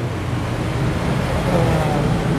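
A steady low rumbling noise with a low hum under it and no clear pattern of strokes.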